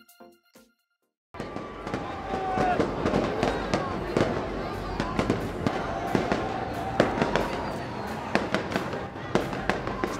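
Fireworks going off in sharp, irregular bangs over the chatter of a large crowd, starting after about a second of silence.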